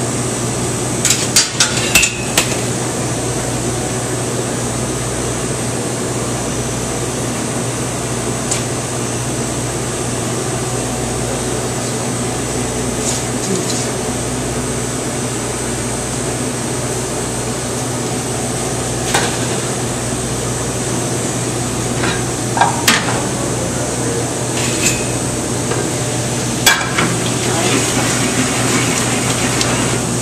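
Metal pans and utensils clinking and clanking now and then on a commercial gas range, a few sharp knocks at a time, over a steady low hum of kitchen ventilation.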